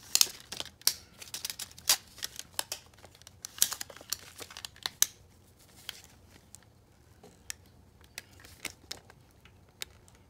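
Handling sounds of a tape measure and a headset strap being moved about: a quick run of clicks and rustles for about five seconds, then only a few scattered clicks.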